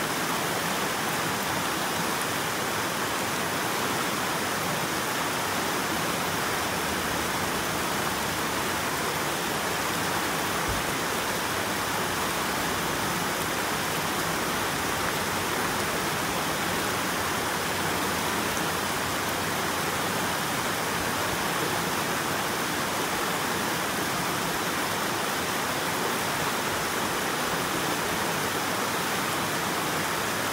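Shallow mountain stream rushing over smooth bedrock slabs and small cascades: a steady, even rush of water.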